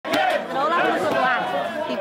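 Several people's voices talking over one another in lively chatter.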